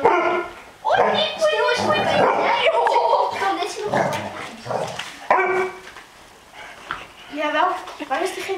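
Eight-week-old Barbet puppies barking and yipping in play, mixed with children's squeals and laughter, in several loud bursts.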